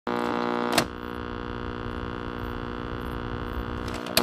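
A steady electrical hum made of many layered tones, with a sharp click about a second in, after which the hum goes on slightly quieter.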